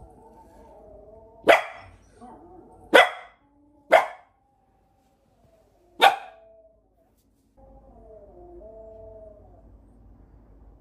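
Samoyed puppy barking four times: single sharp barks about one and a half, three, four and six seconds in.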